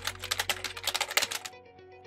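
Typing sound effect: a quick run of key clicks, roughly eight a second, that stops about one and a half seconds in, over soft background music.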